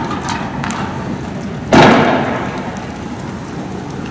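A single loud bang a little under two seconds in, dying away with a short echoing tail, over steady background noise from the scene of a burning street barricade.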